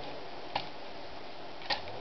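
Two short, sharp clicks about a second apart over a steady faint hiss.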